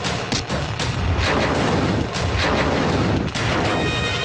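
Action-film fight soundtrack: a rapid series of sharp hits and bangs over loud background music.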